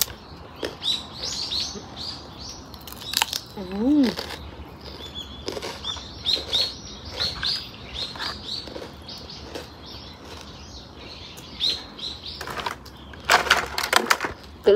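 Small birds chirping over and over in short high notes. Near the end come loud crisp crunches and crackles, as of a grilled rice cracker (bánh tráng nướng) being broken and bitten.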